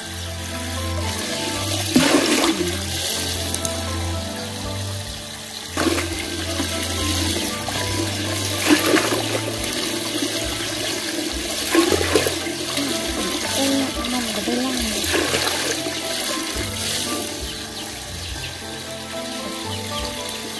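Water rushing into a plastic bucket as it fills, with louder splashing surges every few seconds. Background music plays underneath.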